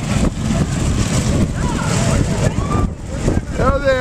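Go-kart engines running as the karts drive past, mixed with wind rumbling on the microphone.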